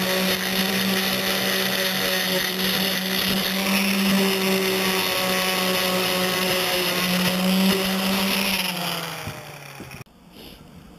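Black & Decker electric sander running steadily as it sands the edge of a panel, then switched off near the end, its motor winding down with a falling pitch.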